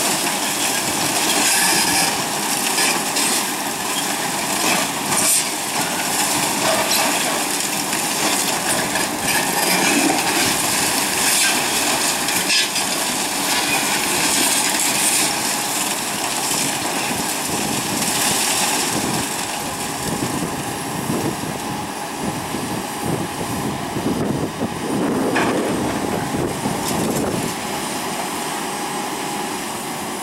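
Hydraulic breaker on a Komatsu PC220LC excavator hammering a concrete water-tower wall in rapid repeated blows, over the steady running of the diesel machines, a little quieter in the last few seconds.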